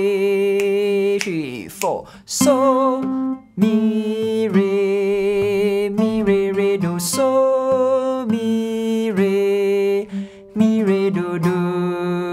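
A man singing a melody in F major while picking it note by note on a steel-string acoustic guitar, in short phrases with brief breaks between them.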